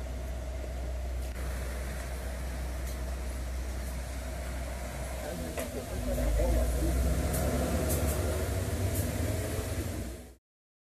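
A vehicle engine idling: a steady low rumble that grows louder about six seconds in, with faint voices in the background.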